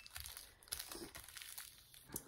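Parchment paper rustling and crinkling faintly as hands press and smooth it flat over a diamond painting canvas.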